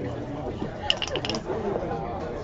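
A pair of dice rolled onto a backgammon board, a quick rattle of about six clicks about a second in.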